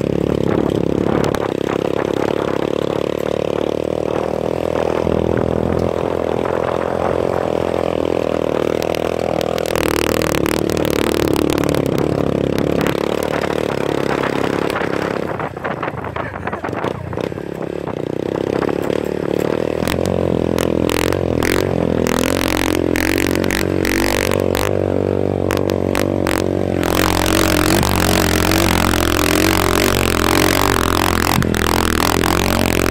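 Motorcycle engine running under load on a rough dirt track, its pitch wavering with the throttle, with frequent knocks and clatter from bumps. The engine eases off briefly about halfway through, then pulls again.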